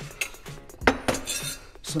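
Kitchen utensils clinking against cookware: a sharp knock about a second in, then a brief rattle.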